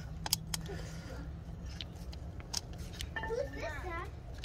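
A few light clicks and scrapes of a metal pick and fingers working the o-ring in the groove of a diesel's oil filter cap, over a low steady hum.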